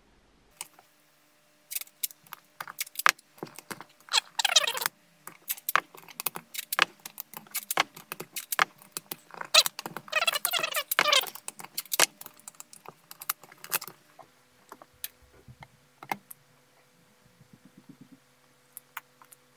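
Thin mylar film crinkling as it is pulled taut by hand, in two brief crackly stretches. Around them is a quick run of light clicks and taps as flat rubber-magnet strips and the panel are set down on the film.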